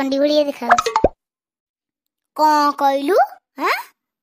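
High-pitched, childlike cartoon voices in short phrases, with a sharp plop-like drop about a second in and a quick rising swoop near the end.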